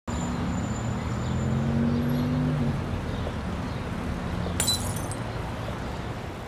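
A low, steady drone of held deep notes that shift pitch a couple of times, with a single sharp glass clink about four and a half seconds in.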